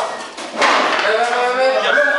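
Voices calling out, with a sharp knock about half a second in.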